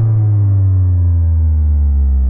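A low electronic synth tone, one long note sliding slowly down in pitch as its brighter overtones fade away.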